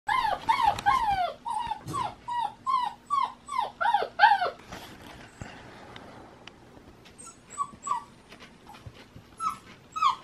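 Puppy whining in a rapid run of short, high whines that each fall in pitch, then a few softer whines near the end. The puppy is uneasy in its crate and wants out.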